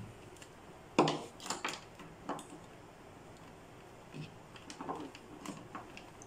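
A sharp knock about a second in, followed by a few lighter clicks and taps and later scattered faint ones: a cable and its plug being handled and put behind a TV on a wooden cabinet.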